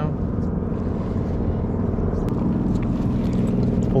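Steady low engine drone, an even hum that holds without rising or falling, with one faint click a little past halfway.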